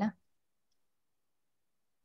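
Near silence: a voice on the call breaks off just after the start, and the rest is dead quiet, as on a muted line.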